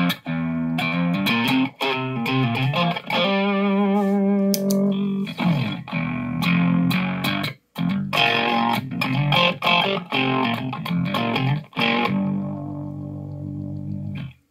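Overdriven electric guitar played through a Victory V40 Duchess tube amp, with a Mor-Gain Woodpecker tremolo pedal in the amp's front end set to its fastest rate and nearly full depth. The result is a fast, choppy tremolo that gives a false sub-octave effect, on chords and single notes ending with a held chord that fades.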